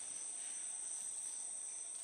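Steady chorus of crickets: a pair of shrill high tones over a faint hiss, beginning to fade near the end.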